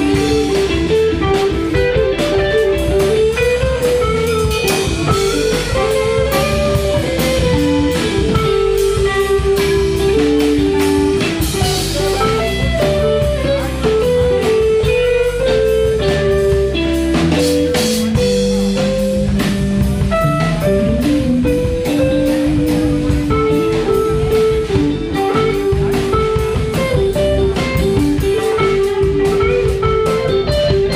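A live blues band playing an instrumental passage, with electric guitar and drums under a bending, wandering lead melody.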